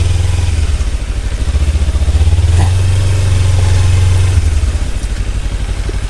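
Kawasaki Ninja 300's parallel-twin engine running at low revs while the bike rides slowly over a rough, muddy dirt track. The engine note dips about a second in and again near the end as the throttle eases.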